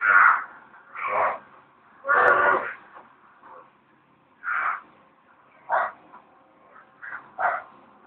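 A string of short, animal-like calls made by a man with his hands held at his mouth: about seven brief cries with pauses between them, the longest and loudest about two seconds in.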